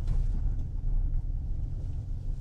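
Low rumble of a car driving across open sand, heard from inside the cabin.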